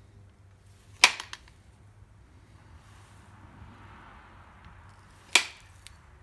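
Two sharp percussion strikes of an antler billet on the edge of an obsidian piece, about four seconds apart, each followed by a faint tick.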